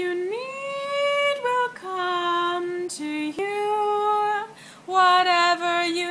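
A woman singing unaccompanied, a slow chant-like melody of long held notes with short breaks between them. The pitch steps up soon after the start and again about halfway through.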